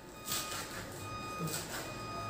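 Kitchen knife cutting through spinach and arugula leaves on a wooden cutting board, a few soft cuts. Faint background music with steady held tones underneath.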